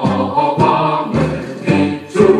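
A Korean military song, with a choir singing over a steady marching beat.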